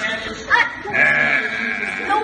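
A small child's voice: a short rising sound about half a second in, then a held high-pitched note, over background voices.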